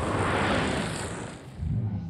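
Production-logo sound effect: a rushing whoosh that swells and fades, then a low thump near the end.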